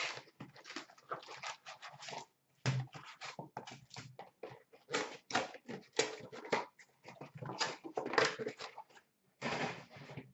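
Hockey card pack wrappers crinkling and tearing as retail packs are opened by hand, along with the rustle of cards being handled, in a rapid, irregular run of short rustles.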